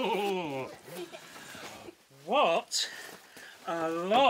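A voice making wordless sounds: a long falling tone at the start, a short rising-and-falling one a little past halfway, and another beginning near the end.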